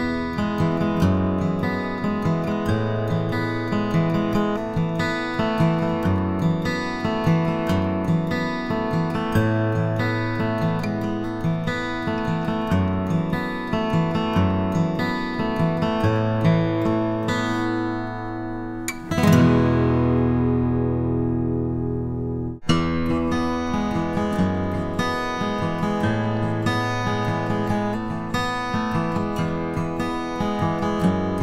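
Steel-string cutaway acoustic guitars picked and strummed in a repeating riff, first on a Martin SC-13E. About nineteen seconds in, a loud strummed chord rings for about three seconds and cuts off abruptly. The same riff then resumes, ending on a Taylor 314CE.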